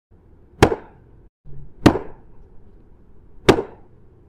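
Three sharp taps on a tennis racket's strings, spaced a little over a second apart.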